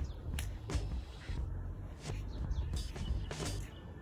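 Outdoor garden ambience: birds giving short, scattered chirps over a steady low rumble.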